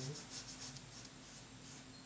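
Oil-paint brush stroked and dabbed on primed paper: a quick run of faint, short strokes in the first second, then a few more.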